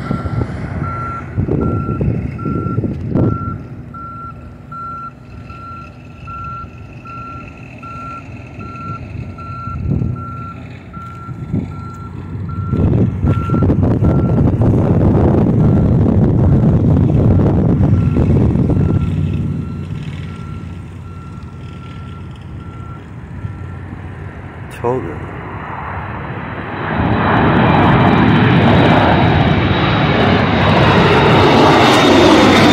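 A vehicle's reversing alarm beeping steadily, a little faster than once a second, growing fainter in the second half and stopping about 24 seconds in. Road traffic passes loudly through the middle. Near the end the roar of a jet airliner climbing out overhead swells up.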